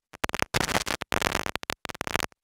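Rapid, stuttering bursts of scratch-like noise with dead-silent gaps between them. They cut off abruptly just after the end, in the manner of a spliced-in audio transition or edit glitch rather than anything in the studio.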